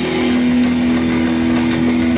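Rock band playing live: electric guitar and bass holding a steady chord over drums and cymbals, with no singing.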